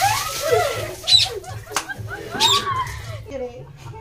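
Several people's voices shouting, squealing and laughing, in bursts with no clear words, while coloured water is thrown over them.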